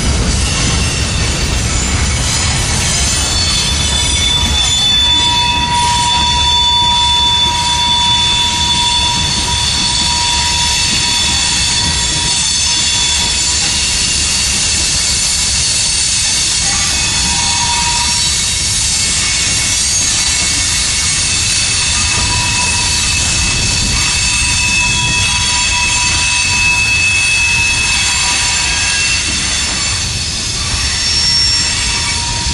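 Freight cars (boxcars and covered hoppers) rolling past on steel rails, a steady rumble of wheels on track. Thin, high, steady squeals from the wheels come and go over it, one lasting several seconds.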